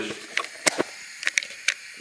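Handling noise in a kitchen: about six short, light clicks and knocks spread over two seconds, over a faint hiss.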